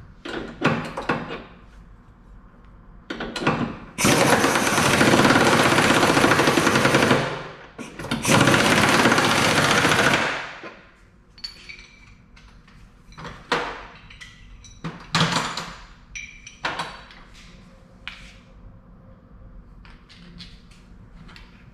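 Pneumatic air tool on an air line running control-arm bolts down into a tubular K-member, in two rattling runs of about three seconds and two and a half seconds, a few seconds in. Short metallic clicks and clanks of tools and fittings before and after the runs.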